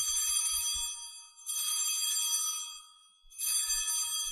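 Altar bells rung three times, each ring a cluster of high metallic tones lasting about a second, marking the elevation of the consecrated host at Mass.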